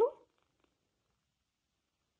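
A woman's spoken word ends in the first moment, then near silence: room tone.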